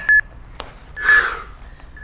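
Interval timer's countdown beeps: two short high beeps about a second apart, marking the last seconds of a work interval. The second beep is overlapped by a man's hard exhale from the effort.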